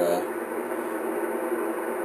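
Steady static hiss from an HF transceiver's speaker as the dial is tuned quickly across the 80-meter voice band in lower sideband, with no station coming through: the band is dead here in the daytime.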